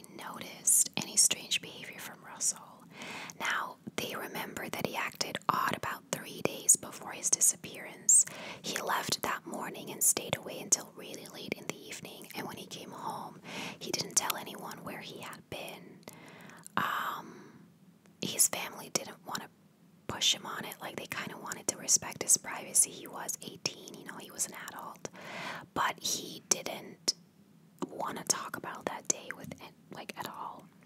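A woman whispering close to the microphone, talking almost continuously with a couple of short pauses, the longest about two-thirds of the way through.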